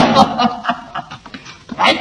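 A man laughing: a loud burst of laughter that tails off into short chuckles over about a second and a half.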